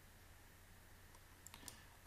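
Near silence with a low steady hum, broken by two or three faint computer mouse clicks close together near the end.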